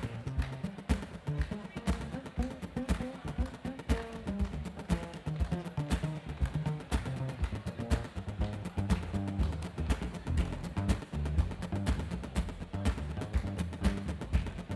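Live folk music: acoustic guitar strumming and an upright double bass plucking a steady, rhythmic groove, with deep bass notes and crisp percussive strokes on an even pulse.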